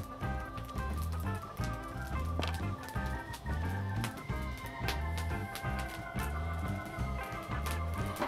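Background music: a steady bass beat under sustained chords.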